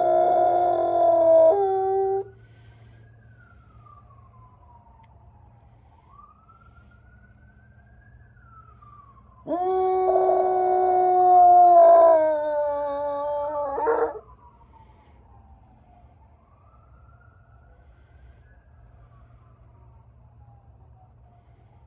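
A young Rottweiler howling twice: one long howl that ends about two seconds in, and another of about four and a half seconds starting near the middle, breaking upward at its end. Between the howls a faint siren wails, slowly rising and falling in pitch.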